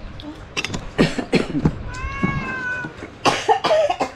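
A cat meows once, a single drawn-out call about a second long, about halfway through. Short sharp knocks and noise bursts come before and after it.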